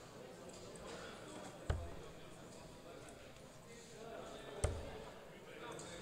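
Darts striking a Winmau Blade bristle dartboard: two sharp thuds about three seconds apart, the first a little under two seconds in, over crowd chatter in the hall.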